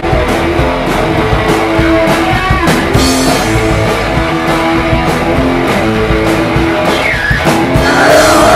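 Live rock band playing loud: electric guitars holding notes over a drum kit with repeated cymbal and drum hits.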